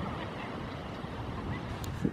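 Steady wind noise on the microphone mixed with gentle ocean surf breaking at the shore.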